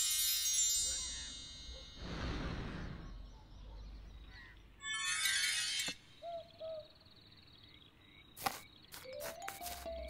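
Cartoon sound effects: a sparkling chime shimmer fades out about a second in. A whoosh follows about two seconds in, then a brief high twinkling burst around five seconds in and a few faint short chirps.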